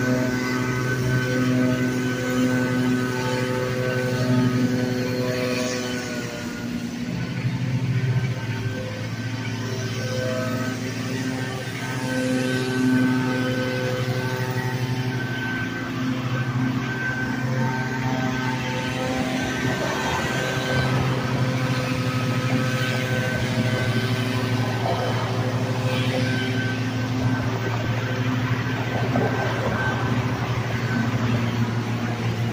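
Backpack leaf blower's two-stroke engine running steadily at high speed, its pitch holding nearly constant with a brief dip about six seconds in.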